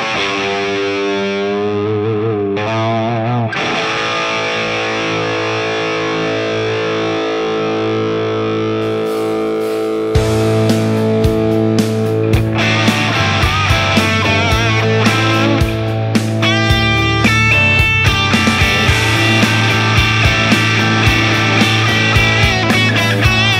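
Distorted electric guitar, a Gibson USA SG Standard, played lead: held notes with wide vibrato first, then ringing chords. About ten seconds in it gets louder and moves into a driving rock part with a steady, evenly picked beat.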